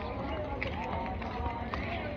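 Voices of people talking at a distance, not loud enough to make out words, over a steady low rumble.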